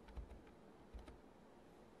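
Near silence broken by two faint bursts of clicking about a second apart: keys being pressed on a computer.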